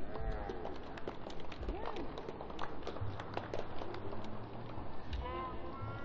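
Arena crowd sound: scattered individual hand claps and indistinct voices from a thinly filled stand. Near the end there is a short stretch of a voice.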